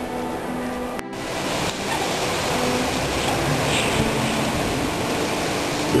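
Blizzard wind blowing hard: a steady rushing noise that jumps louder after a brief break about a second in. Faint background music sits underneath.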